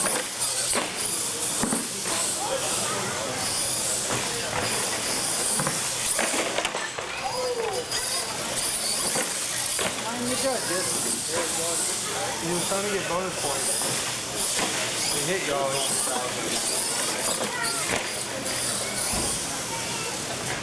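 An R/C monster truck's motor and tyres running on a concrete floor: a steady hiss with a high whine that swells and fades with the throttle, under the murmur of spectators talking.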